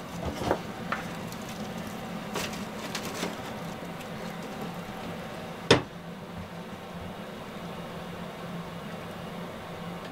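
A newly lit fire in a small wood-burning stove, with a steady hiss and low hum, scattered light crackles and clicks, and one sharp knock a little past halfway as the fire is tended at the stove door.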